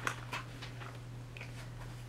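Pages of a paperback picture book being handled and turned: a few short paper rustles and taps, clustered near the start, over a steady low hum.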